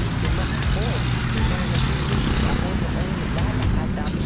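Road traffic: a steady low rumble of vehicle engines and tyres, with faint voices in the background.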